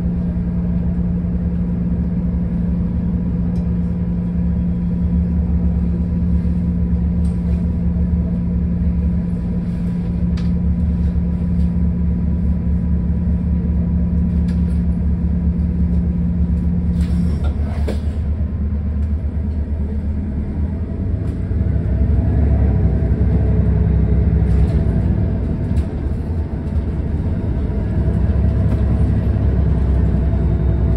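City bus heard from inside the cabin: its engine runs with a steady low hum and rumble while the bus sits. About 20 seconds in, the engine and road rumble grow louder as the bus moves off through traffic.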